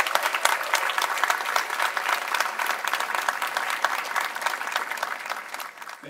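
Large studio audience applauding, a dense patter of many hands clapping that fades away toward the end.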